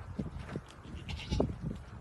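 Young goat kid making a few short, separate bleats.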